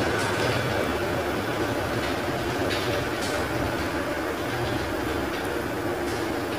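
Chopped onions sizzling in hot oil in a kadhai: a steady, even hiss.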